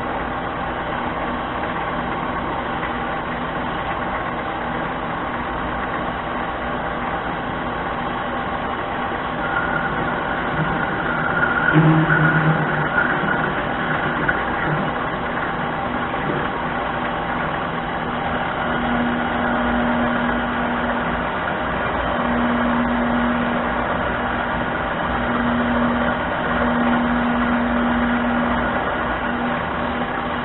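Harbor Freight mini lathe running steadily, its motor and drive whining, while a twist drill in the tailstock chuck is fed into the spinning workpiece. It grows louder for a moment about twelve seconds in, and a low hum comes and goes through the last ten seconds.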